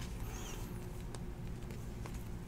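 Quiet room tone with a steady low hum and a faint click about a second in, as a stack of trading cards is handled and sorted.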